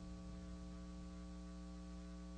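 Faint, steady electrical mains hum with a stack of overtones, unchanging throughout.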